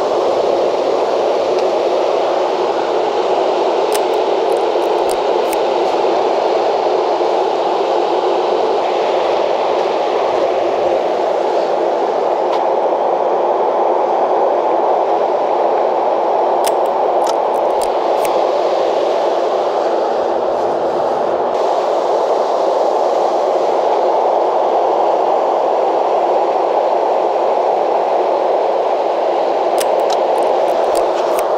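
Ocean surf washing onto the beach: a steady, even rushing noise of waves with almost no rise and fall.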